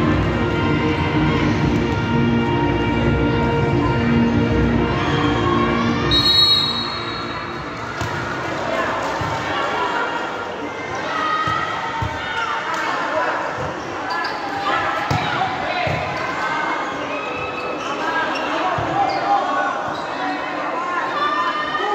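Indoor volleyball match: music plays loudly over the crowd for the first six seconds or so, then cuts off around a short shrill referee's whistle. Spectator chatter and shouts follow, with scattered thuds of the ball being hit as play resumes.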